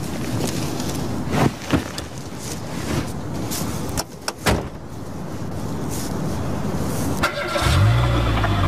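A car with a few sharp thuds in the first half, then engine and road noise building steadily as it drives off. A low steady hum comes in near the end.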